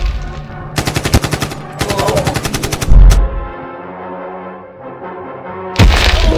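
Machine-gun fire in two rapid bursts, followed about three seconds in by a loud, deep explosion, with another loud blast near the end. These are dubbed war-film sound effects.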